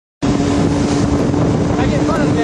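Vehicle engine running at a steady drone with low rumble, and wind buffeting the microphone as the vehicle moves. A voice calls out near the end.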